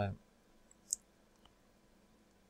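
A single short, sharp click a little under a second in, then a fainter tick, over quiet room tone.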